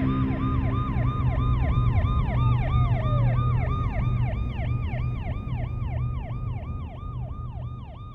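Emergency-vehicle siren in a fast yelp, its pitch rising and falling about four times a second, over a low rumble. A second steady siren tone holds and then slides down in pitch about two seconds in, and the whole sound fades out toward the end.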